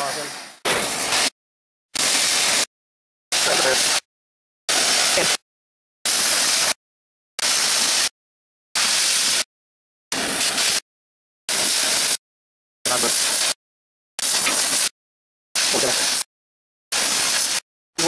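Gas cutting torch hissing as it cuts plate steel, heard as about thirteen short clips of roughly half a second each, evenly spaced, with dead silence between them.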